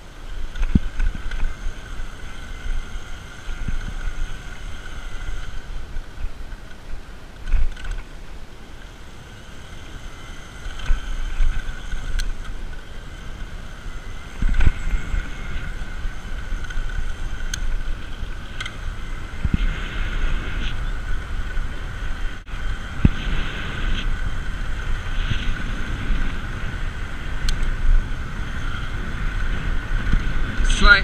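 Wind buffeting the microphone on a moving electric bike, with a steady high whine from the Bafang BBS02 750 W mid-drive motor running on throttle alone, growing stronger about a third of the way in.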